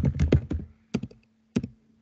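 Typing on a computer keyboard: a quick run of keystrokes, then a pause broken by a few single key presses about a second in and again near the end.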